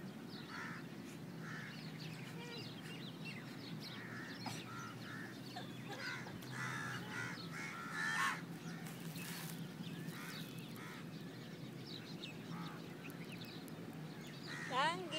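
Outdoor bird chorus: many short calls and chirps scattered throughout, over a steady low hum, with one louder burst of calls about eight seconds in.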